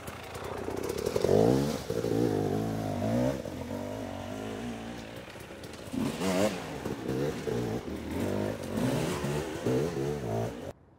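Enduro motorcycle engine revved hard in repeated bursts, its pitch rising and falling with the throttle as the bike works along a slippery grass slope. It is loudest about a second and a half in and again around six seconds.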